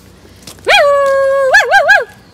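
Pug giving one long, drawn-out howl that starts less than a second in and breaks into three quick rising-and-falling yelps near the end, vocalising at the person it is play-fighting with.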